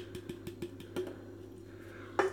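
The last of a can of beer dripping and trickling into a glass over a steady low hum, with a light click about a second in.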